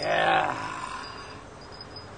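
A man's low groan, loudest at the start and fading away over about a second.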